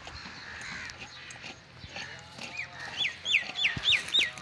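A bird calling a rapid series of sharp notes that each drop steeply in pitch, about three a second, starting a little past halfway through and forming the loudest sound; faint clicks come before it.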